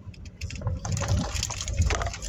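Car tyres on a wet road as the car pulls forward, heard from inside the cabin: a watery hiss with irregular crackles over a low road rumble. It starts about half a second in and grows louder toward the end.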